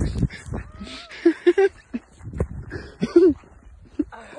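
Dog giving a few short whines and yelps while playing in snow, one thin whine about a second in, with low thumps of wind and handling on the microphone.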